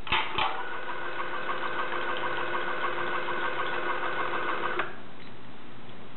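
Watson-Marlow 323Dz peristaltic pump running at 400 RPM through a 30 ml dose: a steady motor whine that starts just after two button clicks and cuts off suddenly just under five seconds later as the dose finishes.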